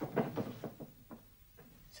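Footsteps on a hard floor: a string of short steps about a quarter to half a second apart, fading out after about a second.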